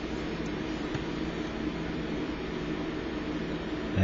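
Steady background hiss with a faint low hum underneath: room tone with no distinct event.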